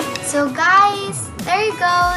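A young girl's high voice in sing-song speech, its pitch swooping widely up and down, starting just after background guitar music stops.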